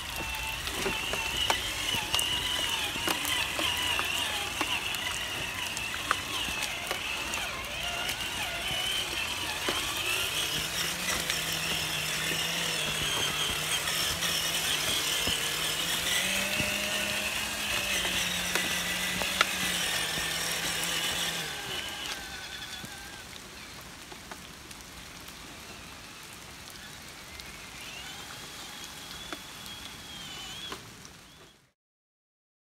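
Electric motor and gear whine of an RC scale crawler driving through shallow muddy water, the pitch wavering as the throttle changes. About 22 seconds in it fades down to a quieter background.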